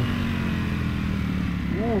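Ducati Panigale V4S's 1103 cc V4 engine running steadily as the bike slows into a bend, heard under wind noise on the helmet-mounted microphone.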